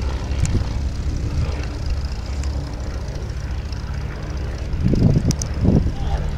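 Miles Magister's de Havilland Gipsy Major four-cylinder engine and propeller droning steadily overhead as the light trainer flies a display pass, with a couple of brief louder low swells near the end.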